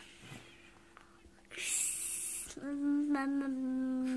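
A short breathy hiss, then a long hum on one steady note, dipping slightly in pitch near the end.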